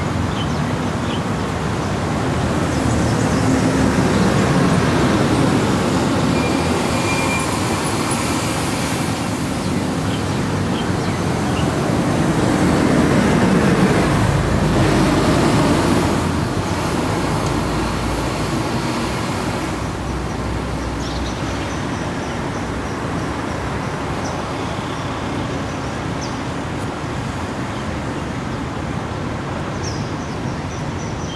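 Road traffic from combustion-engine cars, taxis and a bus passing through a city junction: a continuous mix of engine and tyre noise. It swells twice, about four seconds in and again about fourteen seconds in, the second time with a deeper rumble. It then settles to steadier, quieter traffic noise for the last third.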